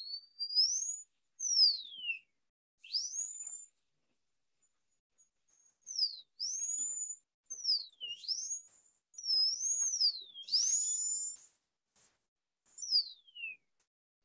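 High-speed dental handpiece run in short bursts on the teeth, its high whine rising as the bur spins up and falling as it winds down or bites, about nine times with short gaps between.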